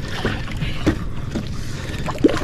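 Water splashing in short bursts, several times, as a large hooked giant trevally thrashes at the surface beside the boat, over a steady low rumble.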